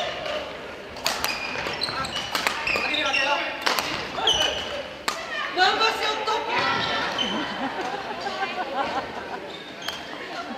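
Badminton rally on a wooden gym floor: sharp racket strikes on the shuttlecock and sneakers squeaking as players move, with voices echoing in the hall.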